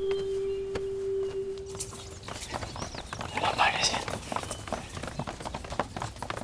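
A held low note of soft background music fades out over the first two seconds. Then come irregular footsteps of a group of sedan-chair bearers walking.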